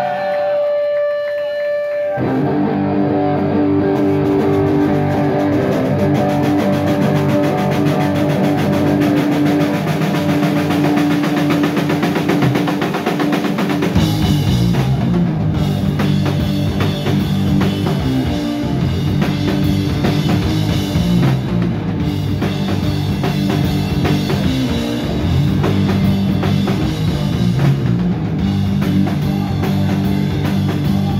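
Heavy rock band playing live with distorted electric guitars, bass and drum kit. A held note rings for the first two seconds, then a guitar riff starts, and the bass and drums come in with the full band about fourteen seconds in.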